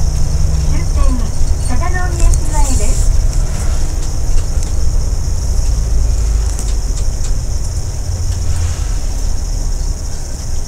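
Steady low rumble of a bus's engine and road noise inside the cabin, easing slightly near the end as the bus pulls in to its stop. A voice talks over it during the first few seconds.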